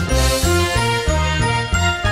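Television news theme music playing over the programme's opening titles, its bass line stepping from note to note several times a second.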